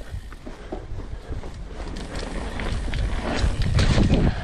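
Alloy Santa Cruz Bronson V3 mountain bike rolling over a bumpy dirt-and-grass trail: steady tyre rumble with a run of short rattling clicks from the bike, louder near the end.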